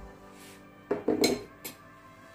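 A few short clinks and knocks of kitchen utensils against dishes, the loudest about a second in, over soft steady background music.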